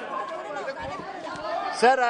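Chatter of many overlapping voices in a parliamentary chamber, with one man's voice loudly calling "sir" near the end.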